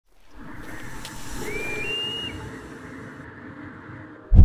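A soft rushing, wind-like noise that fades in, swells and eases off, with one short high whistled note about a second and a half in that steps up in pitch.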